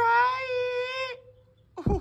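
A voice drawing out the word "try" on a steady high held note for about a second, then a short pause and another brief wavering vocal sound near the end.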